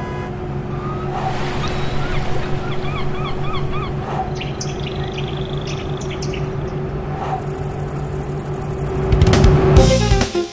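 Sound-effects track of a bus engine running with a steady hum, with a run of rising bird chirps over it in the first few seconds. It swells louder near the end.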